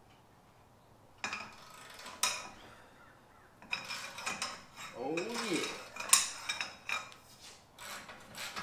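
Long-handled wrench working the tire carrier's pivot bolt: metal grinding and scraping on metal in uneven bursts that start about a second in, with a short creak about five seconds in.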